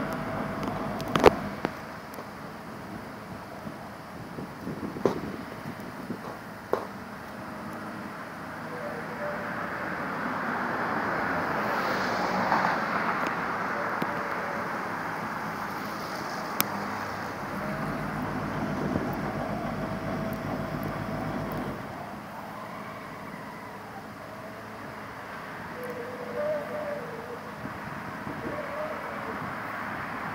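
Engines of road-construction machinery and traffic running outdoors as a steady rumble that swells and fades around the middle, with a few sharp knocks in the first seven seconds.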